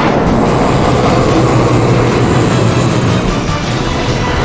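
Film soundtrack: music mixed with a loud, steady rushing rumble, a dramatic sound effect under the action.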